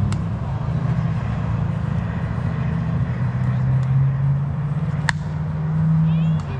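A single sharp crack of a bat hitting a softball about five seconds in, over a steady low droning hum.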